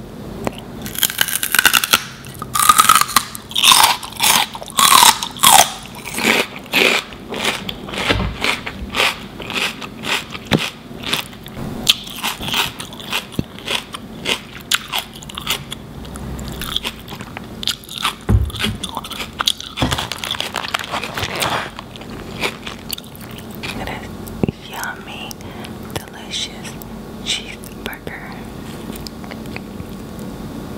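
Raw celery stick bitten and chewed close to the microphone: a fast run of loud, crisp crunches in the first several seconds, then quieter chewing.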